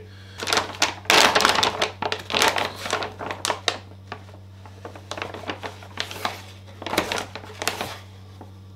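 Plastic supplement pouch crinkling and rustling as it is opened and handled, a run of irregular crackles that is loudest in the first couple of seconds and then lighter.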